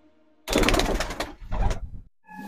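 Domestic pigeon cooing close to the microphone: two low coos, the first starting about half a second in and lasting about a second, the second shorter and near the end.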